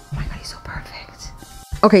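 Soft background music with faint whispering under it; a woman says "okay" near the end.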